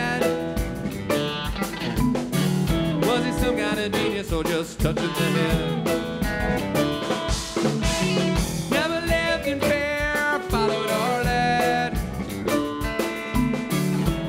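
Live rock band playing: electric guitars and bass guitar over a drum kit keeping a steady beat, with a bending lead guitar line on top.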